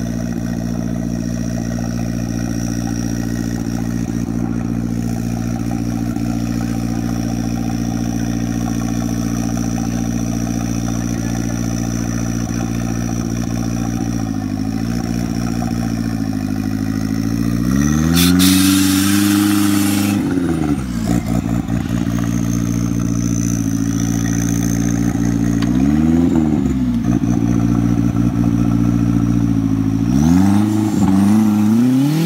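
Off-road buggy's engine idling steadily, then revved in a few short blips. A bigger rev comes about halfway through with a loud hiss over it for about two seconds, and the engine revs up again near the end as the buggy pulls away.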